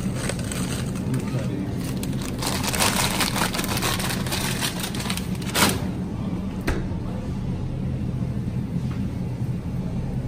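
Rattling, crinkling handling noise for a few seconds, ending in a sharp knock a little past halfway and another soon after, over the steady low hum of a grocery store.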